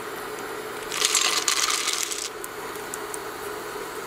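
Raw peanuts poured from a metal measuring cup into a stainless steel pan, rattling and clattering onto the metal for about a second, followed by a few scattered ticks as the last nuts settle.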